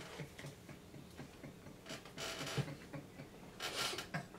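Two men laughing under their breath: quiet, breathy laugh pulses a few times a second, with stronger gusts of breath about two seconds in and near the end.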